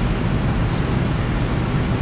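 Steady background noise, a low rumble with hiss across the top, as of ventilation or room noise, with no distinct events.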